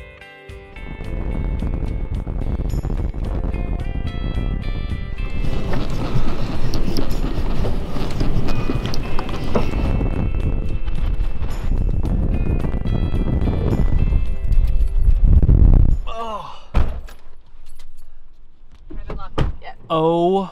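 Background music over strong wind buffeting the microphone: a loud, low rush comes in about a second in and drops away suddenly near the end.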